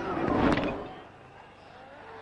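Field sound from a televised cricket match: a brief swell of noise with a sharp knock at its height about half a second in, fading within a second.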